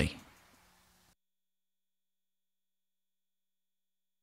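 Digital silence: the last spoken word fades out in the first half second, a faint low hum stops about a second in, and then nothing is heard.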